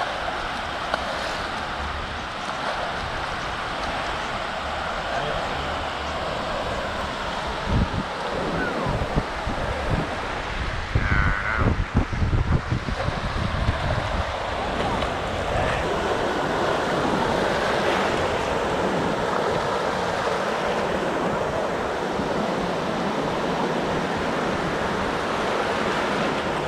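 Small waves washing and breaking in the shallow surf, a steady rushing wash. Wind buffets the microphone in choppy low gusts from about eight to fourteen seconds in.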